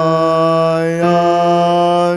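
A male bass voice singing long held notes of the hymn line "still I un-der-stand", moving to a new note about a second in.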